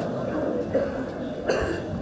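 A single short cough, about one and a half seconds in, against faint low voices.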